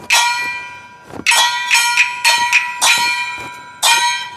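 Chinese opera gong struck again and again as percussion for stage acrobatics. The ringing strikes come in a quick run of about three a second through the middle, with a last strike near the end.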